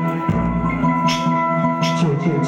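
Instrumental passage from a small live band: electronic keyboards holding sustained notes, with a low drum beat about a quarter second in and a few crisp percussion hits.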